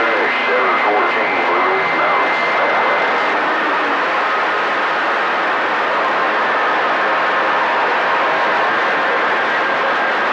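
CB radio receiver hissing with steady band static between transmissions, with faint steady whistles from carriers in the noise and a weak, garbled voice under the static in the first couple of seconds.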